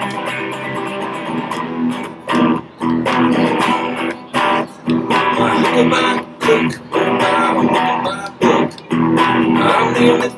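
Electric guitar strumming chords in a steady rhythm, with the chords choked off in short stops about every second.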